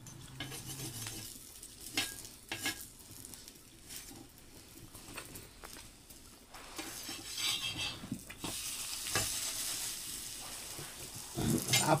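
Metal spatula scraping and tapping on a griddle as a roti cooks over a wood fire, with scattered sharp clicks. A hiss of sizzling and flames grows louder about halfway through.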